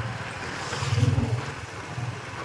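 Motorbike engine running at road speed, its low hum swelling about a second in, with wind rushing over the microphone.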